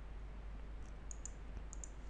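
Faint clicks of a computer keyboard and mouse, several light clicks in quick succession in the second half, over a low steady hum.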